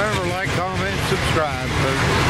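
A person's voice making three short wordless calls, with the rumble of a passing freight train behind it.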